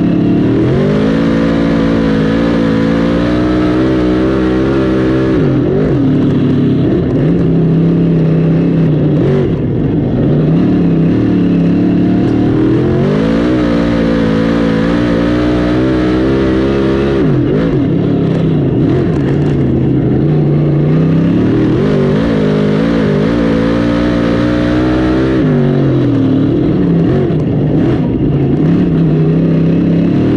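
Dirt modified race car V8 engine at racing speed. The revs climb for several seconds down each straight, then drop and stutter going into the corners, in a cycle that repeats lap after lap.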